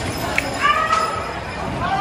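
People shouting in a street commotion, with one long, high yell starting about half a second in, over constant background noise.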